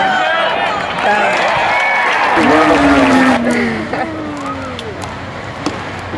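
Ballpark crowd voices, several people calling out and shouting over one another, with one long drawn-out call in the middle before the voices settle into lower chatter.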